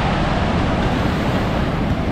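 Ocean surf breaking and washing up the shallows, a steady rushing noise, with wind rumbling on the microphone.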